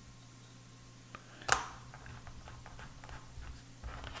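A razor drawn once across a hand microtome, slicing a thin section of a leaf held in carrot: a single short scrape about one and a half seconds in, with a few faint handling ticks around it. A low steady hum runs underneath.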